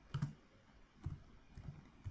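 Computer keyboard being typed on: a handful of faint, scattered keystroke clicks.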